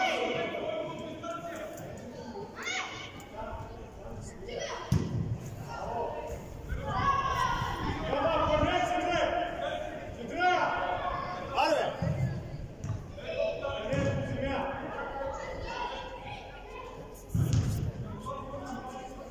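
Shouting voices echoing around a large indoor sports hall during a youth football match, with several dull thuds of the ball being kicked, the loudest near the end.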